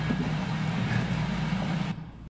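A low, uneven rumble with a faint hiss, as the last held organ tone fades out just after the start; it drops away sharply near the end.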